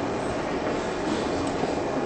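Steady room noise: an even hiss with a low rumble underneath, with no distinct events.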